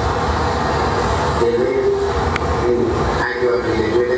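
A steady low rumble with indistinct voices over it.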